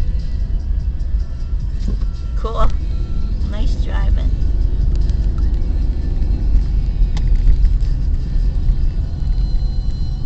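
Steady low rumble of a car driving, heard from inside the cabin. Two brief voice sounds come about two and a half and four seconds in.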